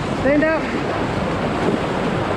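Ocean surf breaking and washing through shallow water close around the microphone, with wind on the microphone. A brief call from a voice rises and falls about a quarter of a second in.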